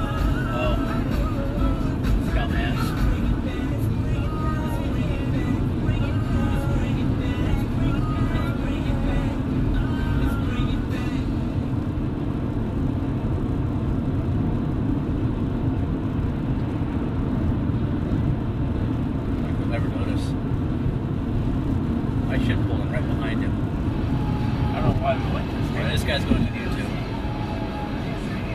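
Steady road and engine noise inside a moving car, with music from the car radio playing faintly underneath, clearest in the first ten seconds or so.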